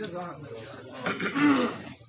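A man clearing his throat once during a pause in his speech, a short voiced sound about a second in.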